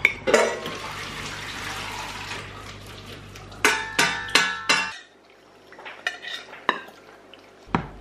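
Kitchen cookware handling: a steady hiss for the first few seconds, then about five ringing metal clanks as a saucepan is handled at the sink, followed by a few faint clicks.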